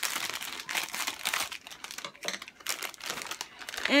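Plastic packaging of a squishy toy crinkling irregularly as it is handled and opened.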